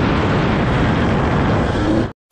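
KTM 150 XC-W two-stroke dirt bike engine running while riding, largely buried under a steady rush of wind noise on the camera microphone. The engine's pitch rises near the end.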